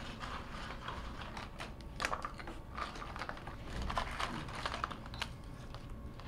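Jigsaw puzzle pieces being sorted and set down on a wooden table: many light, irregular clicks and taps.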